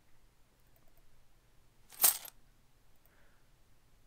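A recorded coin-purse sound effect played back: one short chink of coins shaken in a purse, about two seconds in.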